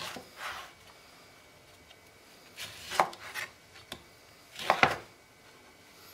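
Kitchen knife cutting through an orange and knocking on a wooden cutting board. There are a few separate cuts with quiet gaps: one at the start, a cluster about three seconds in, and another near five seconds in.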